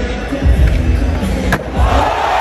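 Skateboard wheels rolling over smooth concrete, a low rumble that builds about half a second in, with a single sharp click about one and a half seconds in. Music plays underneath.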